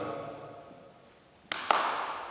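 Two sharp smacks about a fifth of a second apart, hand blows in a staged fight, each with a short ring of room echo.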